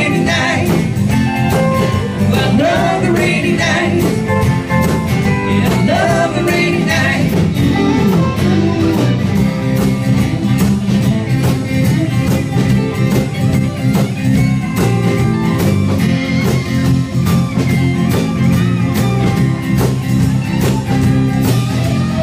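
Live band playing a country-rock passage without lead vocals: strummed acoustic guitar and electric guitar over bass and a steady beat.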